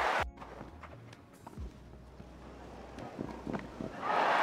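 Televised tennis rally on a grass court, heard through the broadcast: faint ball strikes and player footsteps over a quiet crowd, a little louder about one and a half seconds in. Loud crowd applause breaks off abruptly just after the start.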